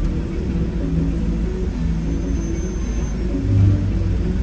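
Engine and road rumble of a moving state-transport bus, heard from inside the cabin: a steady low drone with a pitched hum that shifts now and then and swells briefly near the end.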